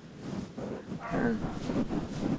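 A person's short hesitant voice sound, a drawn-out 'uh' that falls in pitch, about a second in, over a faint rustle.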